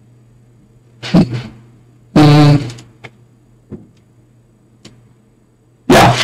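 Short bursts of a person's voice, distorted and clipping at full level, over a steady low hum, with a few faint clicks between them. This is the stream's corrupted audio.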